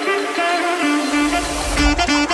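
Background music with sustained pitched notes, and a deep low rumble swelling up in the second half.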